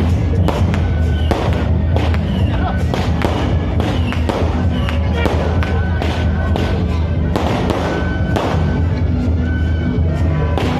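Hand-held firecrackers going off in quick, irregular cracks, several a second, over steady temple-procession music.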